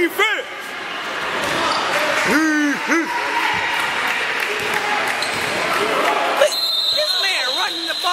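A basketball dribbled on a gym's hardwood floor during a youth game, with voices calling out over the steady noise of the hall.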